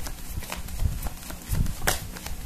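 A deck of tarot cards being handled and shuffled by hand: irregular light clicks and soft thuds of the cards, with one sharper click near the end.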